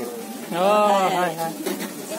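A person's voice: one drawn-out vocal sound about half a second in that rises and falls in pitch, followed by quieter talk.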